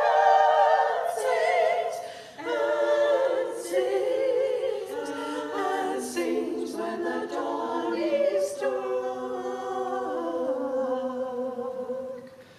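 A choir singing a cappella, several voices in harmony with sung words, the phrasing easing off briefly about two seconds in before the next phrase.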